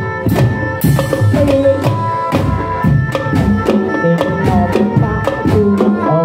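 Traditional Javanese folk music played on drums and percussion: a quick, steady drumbeat of about four strokes a second, with a held melodic line that wavers in pitch above it.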